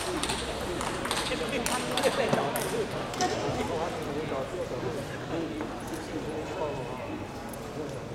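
Table tennis ball clicking sharply a handful of times in the first three seconds, over a steady murmur of voices from the crowd.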